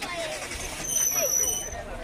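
People talking as they walk, with a high-pitched steady squeal of unclear origin cutting in about a second in and stopping just under a second later.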